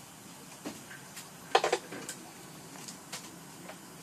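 Low room noise with a few scattered light clicks and knocks, and one brief louder clatter about a second and a half in.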